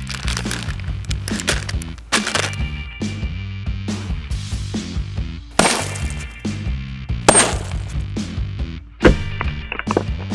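Background music with a steady beat, over which a hammer smashes a bag of crisps on asphalt in four sharp blows, splitting the bag and crushing the crisps. The loudest blows come a little past halfway and about three-quarters of the way through.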